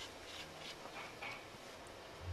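Faint quick scratching strokes, about three or four a second, that stop a little after a second in: billiard chalk being rubbed on a cue tip before a shot.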